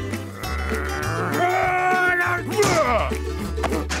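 A cartoon character's drawn-out vocal groaning, its pitch bending up and down with one held note about a second in, over background music with a bass line.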